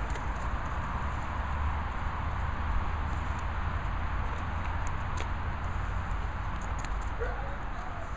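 Steady low rumble and hiss with scattered light clicks; about seven seconds in, an Airedale terrier gives a couple of short whines.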